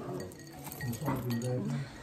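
Light clinks of glassware, with low voices in the background.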